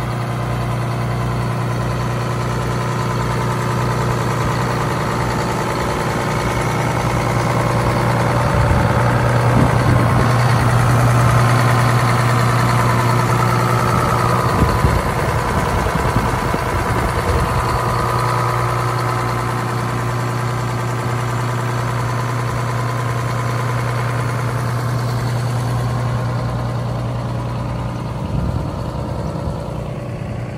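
Detroit Diesel two-stroke bus engine running at idle with a steady low drone and a pulsing beat. For several seconds in the middle it is louder, with a higher whine over it.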